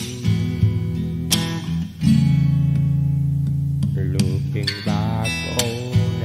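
Acoustic guitar strumming chords, one held ringing for nearly two seconds; from about two-thirds of the way in, a wavering melody line with vibrato sounds over it.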